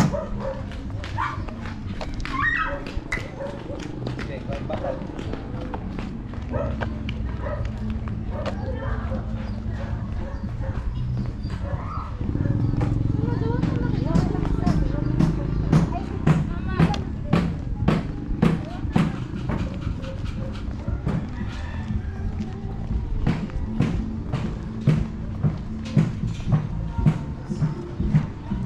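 Residential street ambience: footsteps on a concrete road at a steady walking pace of about two a second, with people's voices and a dog barking. A low rumble comes up about halfway through.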